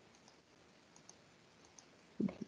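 Near silence with a few faint, short mouse clicks as a PDF is paged forward.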